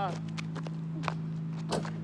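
A missed basketball shot striking the hoop: one sharp knock about a second in and another shortly before the end, over a steady low hum.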